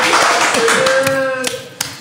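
A group of men laughing and clapping their hands, voices mixed in; the noise dies down about a second and a half in.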